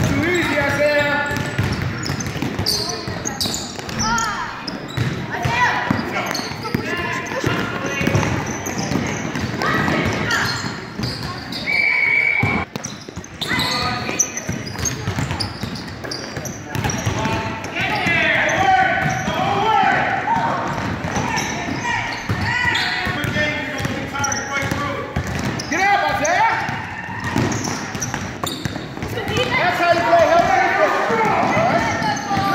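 A basketball bouncing and being dribbled on a hardwood gym floor during play, with voices calling out throughout.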